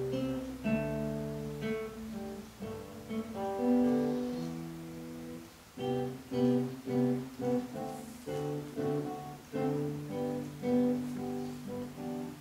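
Solo nylon-string classical guitar played fingerstyle: a plucked melody over bass notes. Just before six seconds in there is a brief dip, then a run of evenly spaced plucked notes, about two a second.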